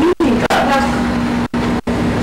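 A person's voice in a room, muffled under a steady low hum and heavy hiss, with the sound cutting out abruptly for a split second three times.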